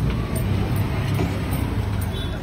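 Low, steady rumble of a road vehicle's engine running close by, over general street noise.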